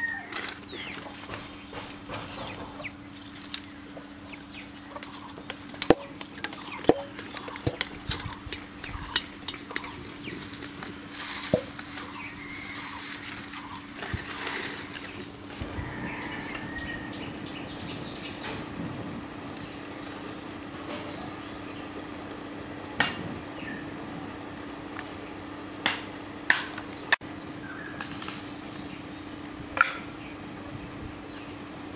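Chickens clucking now and then, over a steady low hum, with scattered sharp clicks and knocks and a stretch of hiss in the middle.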